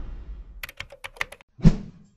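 Quick run of about seven keyboard-typing clicks as a typing sound effect, followed just before the end by a single louder thump that dies away.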